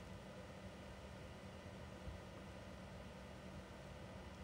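Near silence: faint steady room tone with a low hum and hiss.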